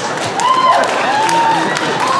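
Theatre audience laughing and clapping, with a couple of high voices calling out over it about half a second and a second in.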